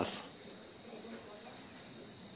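Faint, steady, high-pitched trill of insects in the outdoor morning air.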